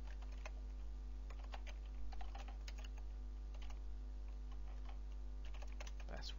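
Computer keyboard being typed on, an irregular run of short key clicks, over a steady low electrical hum.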